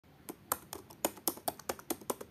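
Computer keyboard typing: quick, uneven key clicks, about five a second, as a password is keyed in.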